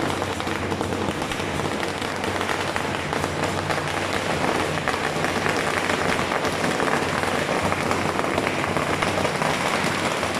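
A long string of firecrackers going off in a dense, continuous crackle that holds steady throughout.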